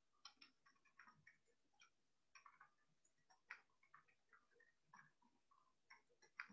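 Faint, irregular clicking of computer keyboard keys being typed, a few keystrokes at a time with short pauses between.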